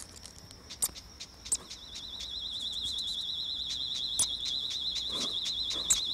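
A continuous high, rapidly warbling insect trill that comes in about a second and a half in and carries on steadily, with scattered short high ticks and chirps around it.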